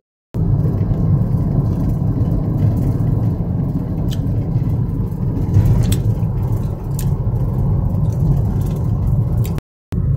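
Steady low rumble of a car's engine and tyres heard from inside the cabin while driving, cutting to silence briefly just after the start and again just before the end.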